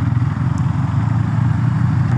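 KTM Duke 390's single-cylinder engine running steadily at riding speed, its rapid exhaust pulses even throughout.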